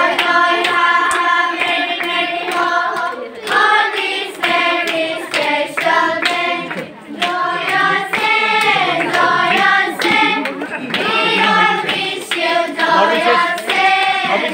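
A group of people singing together in unison, clapping their hands along in time.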